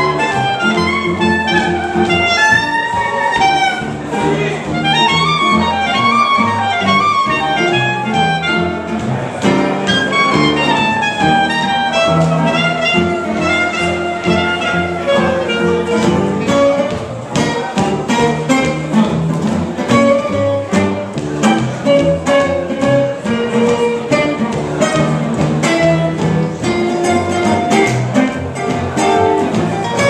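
Live swing jazz from a trio of clarinet, upright bass and acoustic guitar playing an instrumental chorus with no vocals. The clarinet plays flowing melodic lines over the walking bass and strummed guitar for the first half. In the second half, shorter plucked string notes carry the music.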